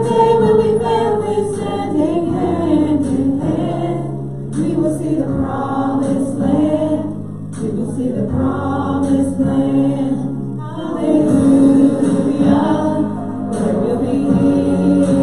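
Gospel worship song sung by several singers into microphones over a recorded backing track, with long held notes.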